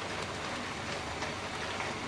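Chopped watermelon rind sizzling steadily in a pan, with faint scrapes and clicks as a spatula stirs it.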